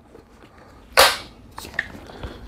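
A gun being pulled out of a nylon sling bag: a single short, sharp rustle-and-clack about a second in, then a couple of faint clicks.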